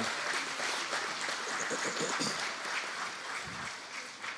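Congregation applauding, a steady clapping that tapers off near the end.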